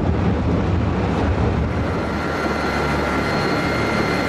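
Icebreaking tug working through broken lake ice: a steady low rumble under a noisy grinding wash. About halfway through, a thin steady high whine joins in.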